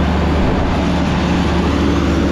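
Heavy diesel engine running at a steady speed, a low hum that does not change.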